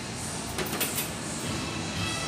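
Light clinks of a metal spoon and fork against a plate, a few quick ones about half a second in, over the steady hubbub of a busy restaurant dining room.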